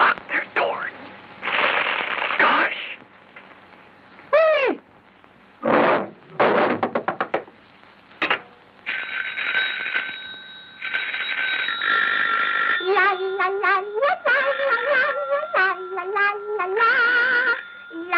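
Early sound-cartoon soundtrack of high, squeaky cartoon voice sounds and comic effects, including a falling slide about four seconds in and a quick rattle a couple of seconds later. After a steady high ringing tone, it ends in a wavering melody of held notes.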